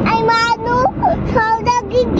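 A young child singing in a high voice, holding a long note in the first second and shorter notes after, over the steady low rumble of a car driving.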